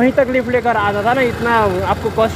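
Men talking, with a low steady rumble underneath.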